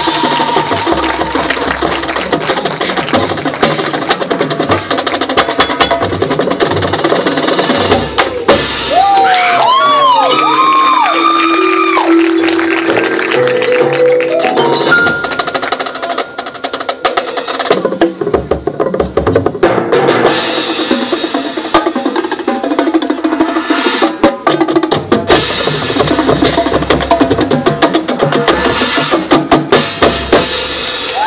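High school marching band playing its competition field show, with drums and front-ensemble percussion hitting sharply throughout. About ten seconds in comes a run of swooping pitch glides, followed by a stepped rising figure.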